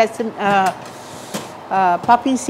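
A metal baking tray being slid into an oven, with a single light knock about a second and a half in, under talk.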